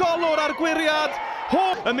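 Speech only: a football TV commentator talking quickly in Welsh.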